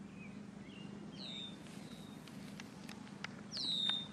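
A bird calls twice with a short whistle that drops in pitch and then holds, about a second in and again near the end, with a few fainter chirps in between. A faint steady background hum runs underneath.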